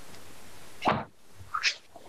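Steady hiss of an open microphone, broken about a second in by a short plop, after which the hiss drops away; a second brief, higher sound follows just over half a second later.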